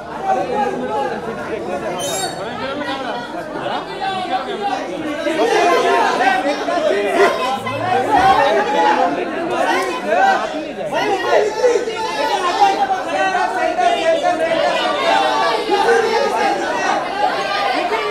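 Many voices talking and calling out over one another: a pack of press photographers shouting for the posing actors' attention.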